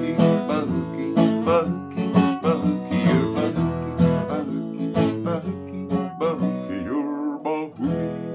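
Steel-string acoustic guitar strummed in a steady rhythm, playing the instrumental close of a song. Near the end the strumming breaks off and a final chord is struck and left to ring.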